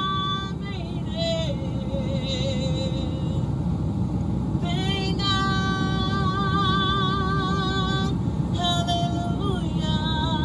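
A woman singing solo through a microphone in long, drawn-out held notes with vibrato, pausing briefly between phrases, over a steady low rumble.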